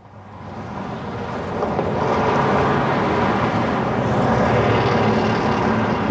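Steady rumble of city traffic, fading up over the first two seconds and then holding at a constant level.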